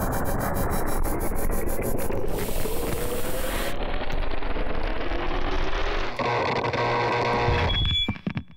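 Designed sound effects for an animated logo intro: a dense, rumbling wash that rises in pitch, with a burst of hiss about two to four seconds in and steadier held tones from about six seconds, cutting off abruptly near the end.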